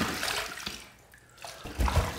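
Water splashing at a bathroom sink as a face is rinsed between shaving passes, in two bursts about a second apart, the second with a low thump.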